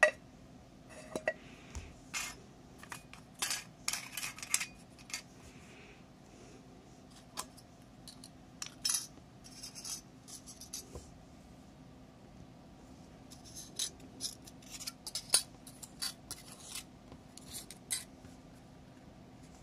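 Thin aluminium sheet cut from a beer can being handled and bent by hand on a wooden desk: scattered sharp crinkles, clicks and light taps in several clusters, with quieter gaps between.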